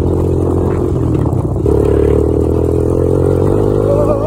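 Honda TRX250EX quad's single-cylinder four-stroke engine running under way, its note strengthening a little under two seconds in.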